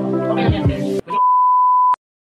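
Background music cutting off abruptly about a second in, followed by a steady, high television test-tone beep, the tone played with colour bars, lasting just under a second and stopping dead.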